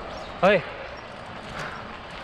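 A man's short strained "ah" of effort about half a second in, while pedalling a heavy fat-tyre bicycle, then a steady hiss of wind and riding noise.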